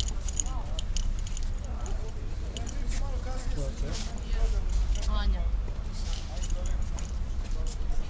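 Background chatter of several people talking quietly, with scattered light clicks and a steady low rumble underneath.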